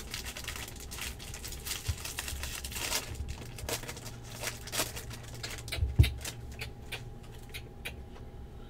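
Foil wrapper of a 2016 Bowman Draft jumbo pack crinkling and crackling as it is torn open by hand, with a sharp thump about six seconds in as the card stack is handled.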